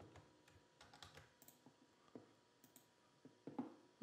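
Faint, scattered keystrokes on a computer keyboard over quiet room tone.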